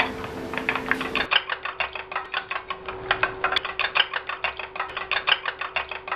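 A metal spoon beating raw egg mixture in a stainless steel bowl, clinking against the bowl in a fast, even rhythm of about six strokes a second.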